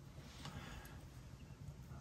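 Quiet room tone with a faint low hum and slight handling noise from a plastic coin tube being turned in the hands.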